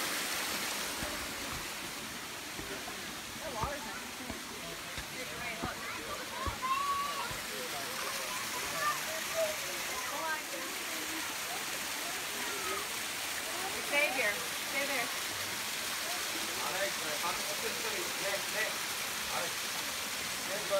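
Small waterfall spilling over rock ledges: a steady rush of falling water, with faint voices over it now and then.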